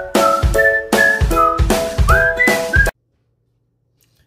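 Intro music: a whistled melody over chords and a steady drum beat, cutting off suddenly about three seconds in.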